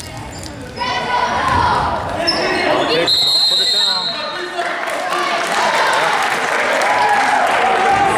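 Basketball being played on a hardwood gym floor, with players' shoes squeaking and spectators' voices echoing in the hall. A referee's whistle blows once, just under a second long, about three seconds in, stopping play.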